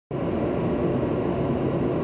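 Steady low rumble of wind and rough surf on a stormy coast, with a car driving along the coastal road.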